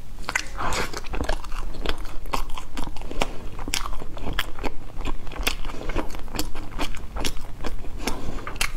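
Close-miked mouth sounds of a person chewing a mouthful of food, with short sharp crunchy clicks about three times a second.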